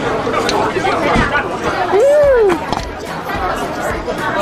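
Chatter of diners in a busy restaurant, with one voice gliding up and then down about two seconds in.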